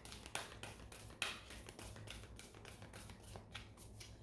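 Faint handling noise: irregular soft clicks and rustles, about a dozen over the few seconds, one a little louder about a second in.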